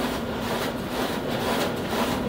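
Print-shop machine running steadily: a continuous mechanical whir with a hum and a regular pulse about twice a second.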